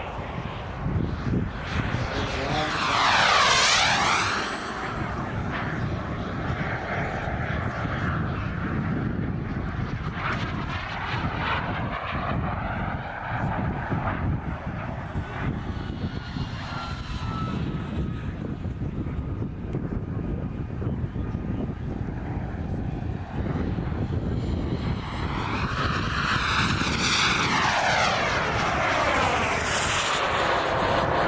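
Turbine engine of a radio-controlled Jet Legend F-16 model jet in flight. It makes a loud pass about three seconds in, runs more faintly in the middle, then builds to a second loud pass near the end.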